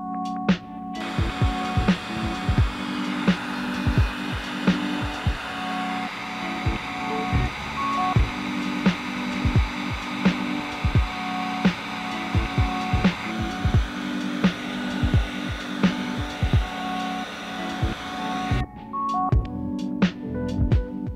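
A heat gun blowing steadily, its fan and air noise switching on about a second in and cutting off near the end, over electronic background music with a steady beat.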